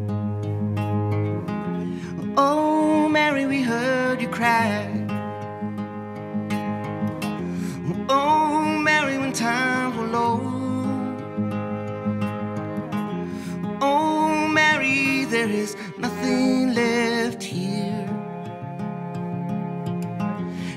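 Slow folk song played on acoustic guitar and cello: the guitar accompanies while a melody with vibrato comes and goes in several phrases.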